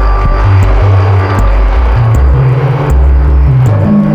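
Experimental electronic music: a low bass line stepping from note to note every few tenths of a second under a dense, noisy hiss.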